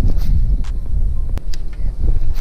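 Wind buffeting and handling noise on a body-worn camera's microphone as the rod is swung for a cast: an uneven low rumble with a few sharp clicks.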